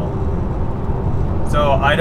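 Steady low road rumble inside the cabin of an electric Tesla Model 3 Performance cruising at highway speed, about 70 mph. A man's voice starts near the end.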